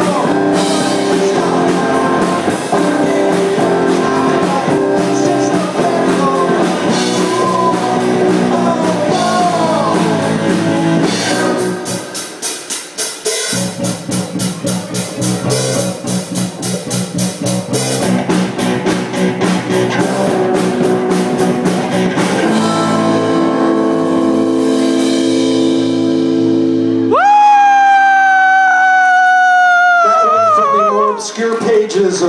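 Live rock band playing: electric guitars, bass guitar, drum kit and a singer. The bass drops out for a couple of seconds about halfway through while the drums keep time, and a long held note rings out near the end.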